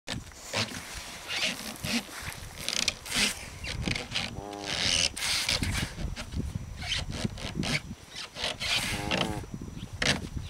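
A cow rubbing and scraping her muzzle around inside a plastic calf sled, making repeated irregular scraping strokes on the plastic. Twice, midway and near the end, the rubbing turns into a short wavering squeal.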